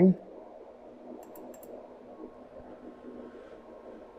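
A few faint, quick computer mouse clicks about a second and a half in, over low steady background noise.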